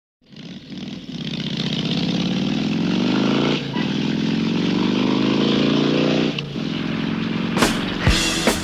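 Cyclemaster two-stroke engine in the rear wheel of a BSA Airborne folding bicycle running under way, its pitch climbing as it gathers speed, easing briefly about halfway, then climbing again. Near the end, drum hits of a rock music track come in.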